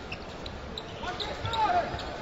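A basketball being dribbled on a hardwood court over steady arena crowd noise.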